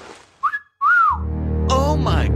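Two short whistle glides, the second rising and then falling, as a cartoon sound effect. About a second in, loud background music with a deep, steady bass comes in.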